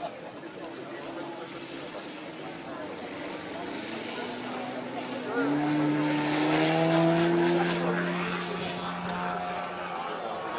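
A 41% scale Extra 330SC model aerobatic plane's 200 cc four-cylinder engine starts with a faint idle. From about four seconds in it opens up, rising in pitch for the take-off run. It then holds a loud, steady, slowly climbing drone that eases a little near the end.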